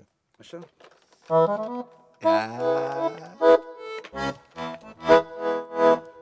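Roland digital accordion being played: a held chord about a second in, a longer chord, then a run of short chords about twice a second.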